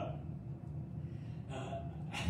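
A man's quick intake of breath near the end of a pause in speech, over a steady low room hum.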